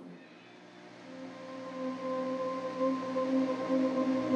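Lap steel guitar sustaining soft, slightly wavering notes that swell slowly louder as the song's intro begins.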